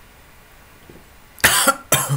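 A man coughing twice in quick succession, about one and a half seconds in, just after a swallow from a mug.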